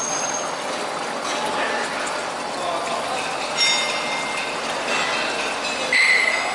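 Steel wire being handled and fed into a chain link fence machine's mold: light metallic clinking and ringing of the wires over steady workshop noise, with a sharper ringing clink about three and a half seconds in.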